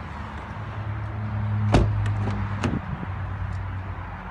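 Car door of a 2014 Toyota Corolla LE shut with a thump about halfway through, followed a second later by a lighter click of a door latch, over a low steady hum.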